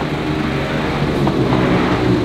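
A small car's engine idling steadily.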